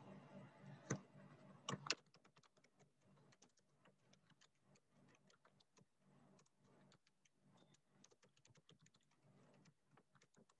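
Faint, irregular clicking of a computer keyboard being typed on, with two louder clicks in the first two seconds.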